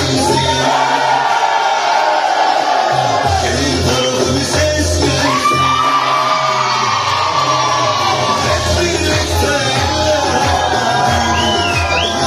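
Loud dance music with singing, long held melody notes over a steady beat, with a crowd clapping and shouting along. A short whistle near the end.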